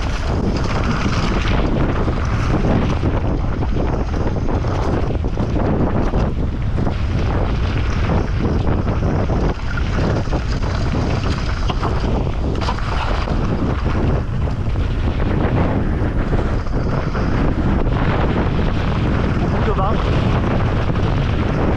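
Steady wind buffeting the microphone over the rumble of knobby tyres on loose gravel and rock, with the constant clatter and rattle of a downhill mountain bike (a Pivot Phoenix carbon) bouncing over rough ground at speed.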